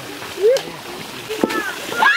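Splashing and sloshing in muddy paddy water, with people calling out over it; the loudest is a short rising shout about half a second in.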